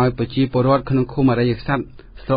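Only speech: a man reading a radio news bulletin in Khmer.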